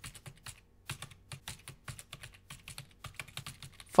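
Computer keyboard keys typed in a quick, even run of faint clicks, with a short pause a little under a second in.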